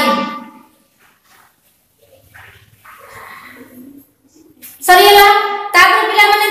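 A voice reciting in a sing-song chant, with held, level notes. It trails off in the first half second, pauses for about four seconds, and starts again loudly near the end.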